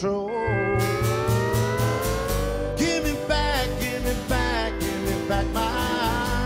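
A country band playing live in an instrumental passage between sung lines: an acoustic guitar strummed in a steady rhythm over plucked upright bass notes, with one long note sliding slowly upward through the first half.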